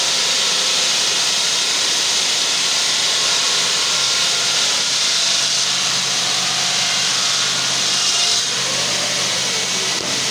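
Large water-cooled circular stone-cutting saw running through a big granite block, a steady loud grinding hiss of blade on stone with water spray. The hiss eases slightly a little past eight seconds in.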